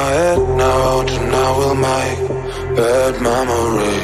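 Dance-pop house music: a sung vocal melody that slides in pitch, over a steady bass.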